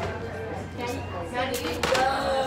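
Background music and indistinct voices in a restaurant dining room over a steady low hum, with a few knocks and rubs from a phone being handled about three quarters of the way through.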